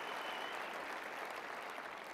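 Audience applauding, the applause slowly tapering off.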